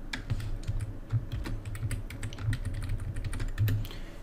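Computer keyboard typing: a quick, irregular run of keystroke clicks as code is entered in an editor.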